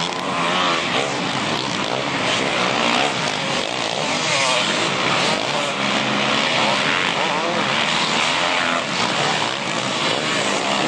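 Several motocross bikes racing together, their engines revving up and down over one another as they come through a sandy corner.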